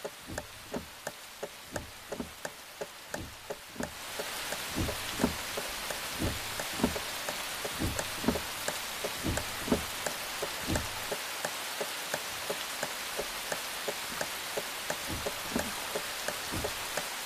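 Rain: separate raindrops dripping a few times a second, then about four seconds in a steady hiss of heavier rain sets in beneath the drops.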